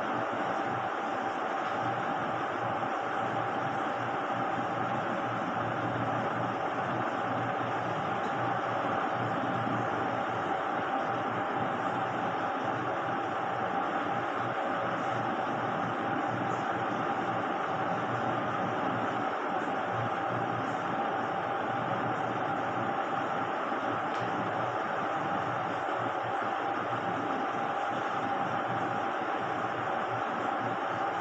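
A steady machine noise: an even hiss with a constant mid-pitched whine over a low hum, unchanging.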